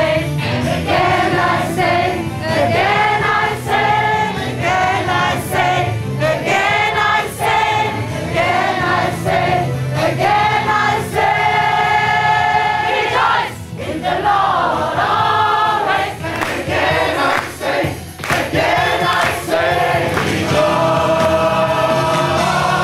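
An amateur gospel choir singing together, with phrases that rise and fall and a long held chord about halfway through.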